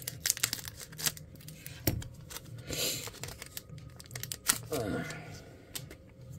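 Scissors snipping open a foil Pokémon booster pack, with a run of sharp clicks and crinkling of the foil wrapper, and a longer rustle near the middle as the pack is torn or opened.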